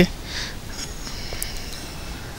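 A short sniff from the man at the microphone just after he stops talking, over a low steady hiss, with one light click about a second and a half in.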